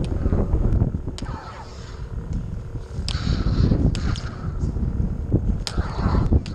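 Lightsaber dueling blades striking each other in several sharp clacks, about a second or two apart, over a steady low rumble of wind and movement on the head-mounted camera's microphone.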